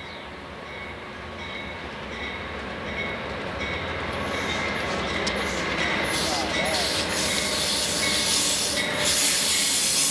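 Amtrak passenger train led by a GE Genesis diesel locomotive approaching and rolling in past the platform, growing steadily louder as engine and wheel noise build. A thin high squeal recurs as it slows for its station stop, and a hiss of rolling wheels and braking fills in about four seconds in as the locomotive nears and passes.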